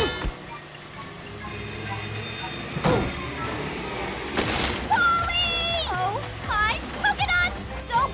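Cartoon soundtrack over light background music: a thud about three seconds in, a brief rushing noise a second later, then a girl's short strained vocal sounds, gasps and whimpers, from about five seconds on.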